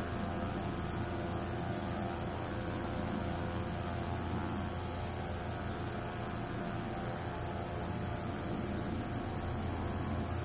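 Insects chirping in a field: a steady, high-pitched trill with a fainter pulsing call repeating about three times a second, over a low steady rumble.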